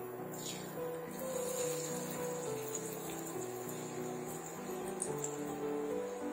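Hot mustard oil sizzling and crackling as a ball of rice-flour dough is dropped in to deep-fry, starting about a second in. Background music plays throughout and is the louder sound.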